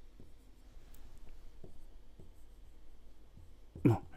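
Marker pen writing on a whiteboard: quiet, scattered strokes and rubs as letters are written.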